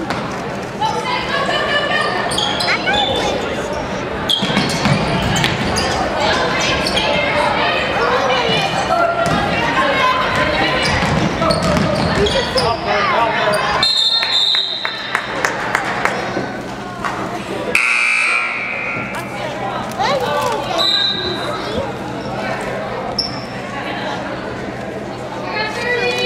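Basketball game sounds in a school gymnasium: a crowd talking and calling out, the ball bouncing on the hardwood floor, and a brief shrill tone twice in the second half.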